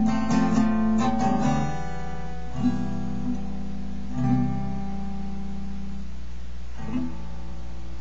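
Acoustic guitar strumming chords: quick strokes for about two seconds, then three single chords struck and left to ring. A woman's voice comes in singing at the very end.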